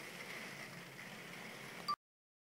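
Faint steady hiss of room tone, ended near the end by a short click as the recording cuts off into silence.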